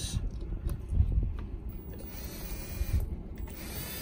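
Cordless drill driving a screw through a plastic PVC end cap into the pipe, its motor whining in short runs, with a few low knocks.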